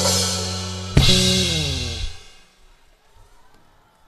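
Live band with guitars, keyboard and drum kit ends a song on one last full-band hit about a second in. The held notes slide down in pitch and die away within a second or so, leaving only low background sound.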